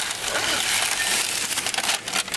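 Paper fast-food bag rustling and crinkling as a hand digs into it and pulls out a paper-wrapped burger.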